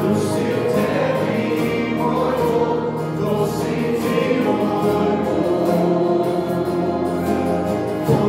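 Small live worship band: several voices singing together to acoustic guitars and a keyboard, at a steady full level.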